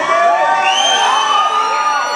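Concert crowd cheering and whooping, many voices rising and falling over one another in answer to a call from the stage, with a high held tone coming in under a second in.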